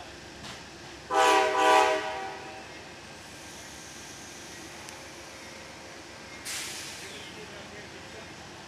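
Amtrak passenger train's horn sounding two short blasts about a second in, the usual signal that the train is releasing its brakes to move off. A short hiss of air follows a few seconds later.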